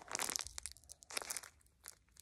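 Paper squishy crinkling and crackling as it is handled and squeezed in the hands: a dense burst of crinkles at the start, then a few scattered crackles.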